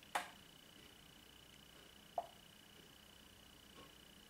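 Near silence: quiet room tone with a faint steady high-pitched whine, a short soft rush just after the start and a brief faint blip about two seconds in.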